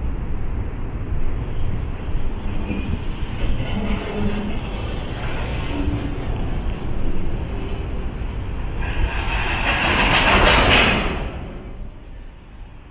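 Freight train of container flat wagons rolling slowly along a station platform, with a steady low rumble of wheels on rails. About nine seconds in, a louder rushing, grinding noise builds and then dies away as the train comes to a stop.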